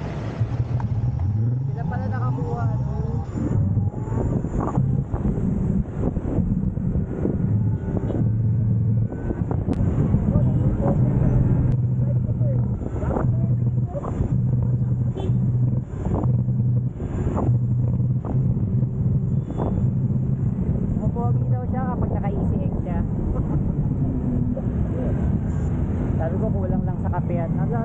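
Road noise heard from a camera mounted on a moving electric motorcycle: wind and traffic on the microphone, with a low drone that breaks up on and off.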